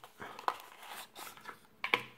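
Small cardboard box being handled and opened: faint rustling and scraping of card, with a few light clicks, the sharpest about half a second in and two more near the end.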